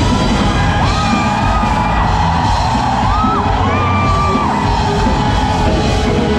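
A post-rock band playing live in a hall, loud and dense, heard from within the audience. A voice rises and holds long high calls over the music a few times, about a second in and again around three to four seconds.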